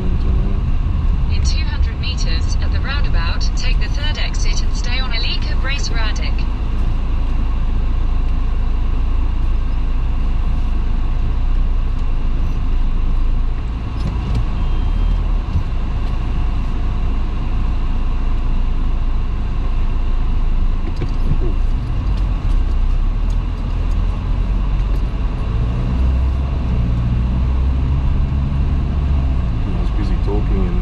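Car driving through town at moderate speed, heard from inside the cabin: a steady low engine rumble and tyre noise on the road. A burst of high, quick chirps runs for a few seconds near the start.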